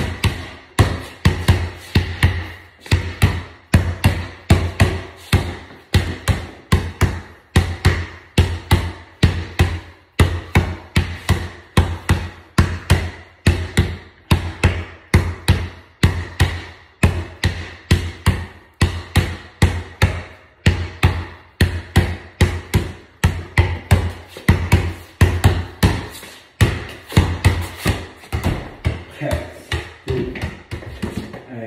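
Basketball dribbled hard on a bare floor in a small room, about three bounces a second, each with a short low ring. Near the end the bounces turn irregular and fainter.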